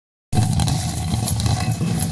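Jhato, a traditional hand-turned stone quern, grinding grain: a steady low rumble of the upper millstone turning on the lower one, starting a moment in.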